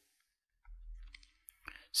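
A pause in the narration: silence, then a faint low hum and a few soft clicks, with the voice starting again at the very end.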